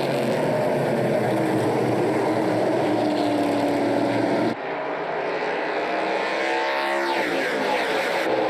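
A pack of NASCAR Pinty's Series V8 stock cars at full throttle on the opening lap, engines running hard together. About halfway through the sound drops abruptly and changes character, then one car passes close with its engine pitch sliding down.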